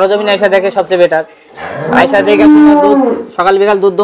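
A Friesian cow in the shed mooing once, a single long call of nearly two seconds that starts about one and a half seconds in and holds a steady pitch before falling away.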